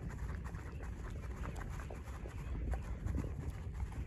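A dog licking whipped cream off a paper plate: many quick, irregular wet lapping clicks over a low rumble.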